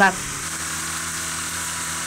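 Heavy rain pouring steadily in a downpour, an even hiss, with a faint low steady hum underneath.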